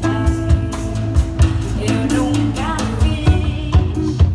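A live band playing: a woman singing into a microphone over electric guitar, bass guitar and a drum kit keeping a steady beat.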